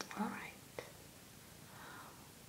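A woman's soft, close-miked voice making a short hum-like vocal sound with a rising pitch, with a mouth click on either side of it and a breath near the end.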